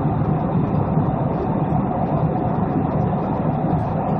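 Steady cabin noise of a Boeing 777-200 in cruise flight: a constant low rush of engines and airflow heard from inside the passenger cabin.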